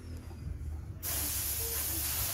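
A low steady hum, then a loud, even hiss that starts suddenly about a second in and holds steady.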